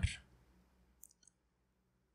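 The tail of a spoken word, then near silence broken by one faint, short click about a second in: a computer mouse click advancing the presentation slide.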